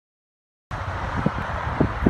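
Silence, then about two thirds of a second in, outdoor ambience cuts in abruptly: a steady low rumble and hiss of wind on the microphone, with a few brief low blips over it.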